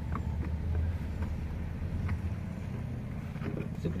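A motor running with a steady low hum, with a few faint light clicks over it.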